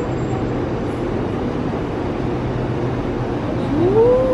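Steady supermarket room noise: a low, even hum with a rushing haze, the kind given off by open refrigerated display cases and ventilation.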